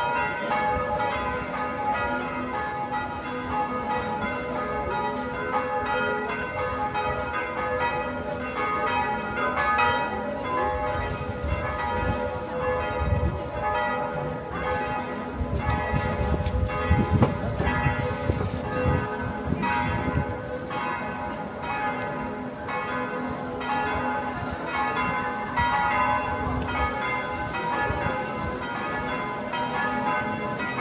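Church bells ringing in a continuous peal, many overlapping bell tones struck again and again. A low rumble comes up under the bells around the middle.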